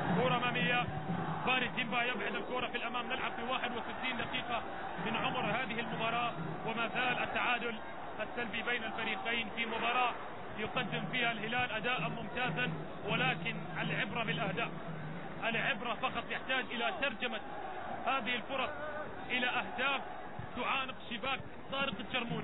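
A man's voice speaking throughout, over a steady low background din from the stadium.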